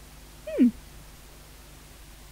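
A single short vocal call about half a second in, sliding steeply down in pitch.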